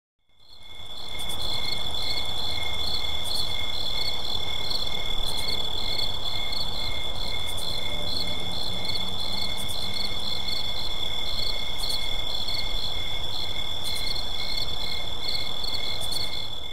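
Steady night chorus of chirping crickets, a constant high trill with fast repeating pulses, fading in over the first second.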